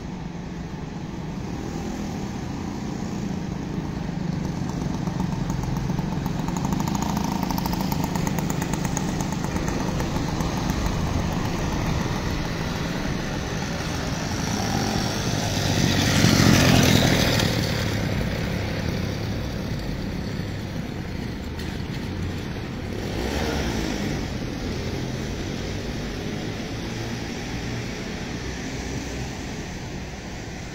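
Outdoor city street noise with a steady low traffic rumble. A motor vehicle passes close by about halfway through, swelling to the loudest moment and fading, and a fainter one passes a few seconds later.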